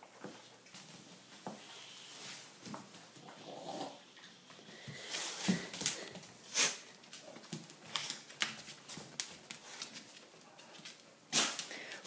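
A wire-haired terrier mix moving about: soft scattered clicks and scuffles, with a few louder knocks in the middle and no barking.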